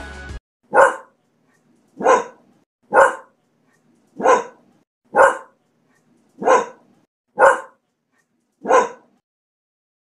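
A dog barking eight times, single sharp barks about a second apart with complete silence between them. The barks start just after background music cuts off.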